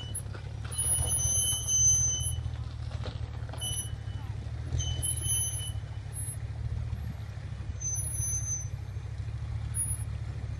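Low, steady rumble of a GMC SUV's engine running gently as the truck wades slowly through a river crossing. Short high, thin whistling tones come and go over it.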